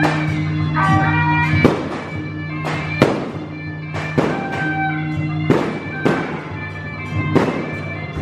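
Firecrackers going off in single sharp bangs, about seven of them at irregular intervals, over electric-guitar background music.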